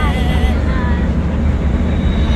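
Steady low rumble of a moving bus, heard from inside the passenger cabin, with voices over it.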